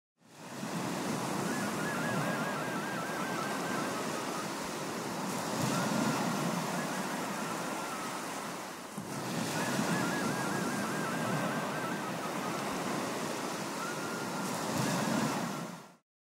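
Sea surf, a steady rushing that swells and eases, with a faint high warbling twice over. The recording repeats after about nine seconds, as a loop.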